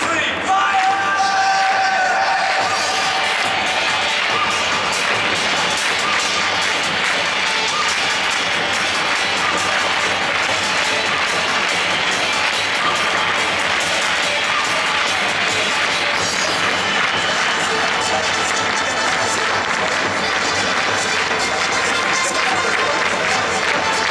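Football stadium crowd noise with music playing over it, steady throughout, with a few held tones near the start.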